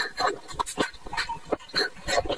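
Close-up mouth sounds of a grape being bitten and chewed: a quick irregular run of wet crunches and clicks.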